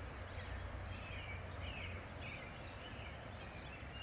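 Faint dawn birdsong: scattered distant chirps and two short high trills, the first right at the start and the second about a second and a half in, over a steady background hiss.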